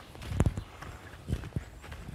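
Footsteps of a hiker walking on a forest trail: a few irregular footfalls, the loudest about half a second in.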